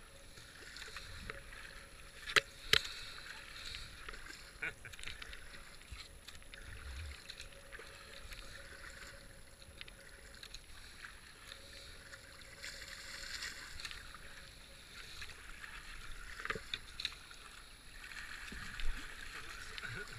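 Kayak paddling on calm water: the paddle blades dipping in, splashing and dripping with each stroke, with a couple of sharp knocks about two and a half seconds in.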